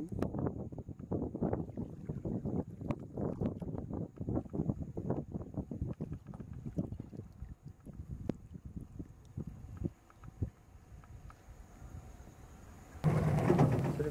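Irregular rumbling of wind and water noise around a small boat, dying down after about ten seconds, with a loud burst of noise near the end.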